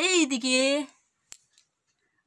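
A voice calls out in a sing-song phrase for just under a second, followed by a single sharp click.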